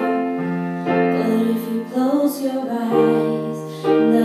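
Yamaha digital keyboard playing sustained piano chords that change every second or so, with female voices singing over them.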